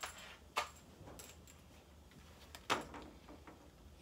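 A few faint, short clicks and knocks, the clearest about half a second in and near three seconds in, over a low steady hum.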